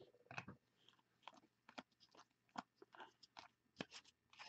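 Faint, irregular clicks and light scrapes of a stack of 2018-19 Panini Select basketball cards being flipped through and slid against each other by hand.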